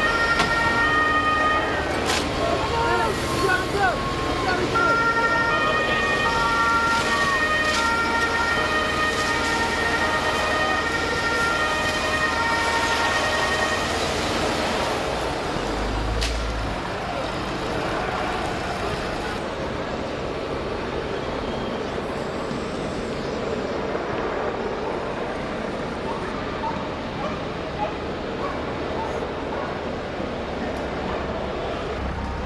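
Two-tone police siren alternating between two steady pitches for about the first half, over crowd noise and voices, with a few sharp cracks. After that a steady din of crowd and traffic noise.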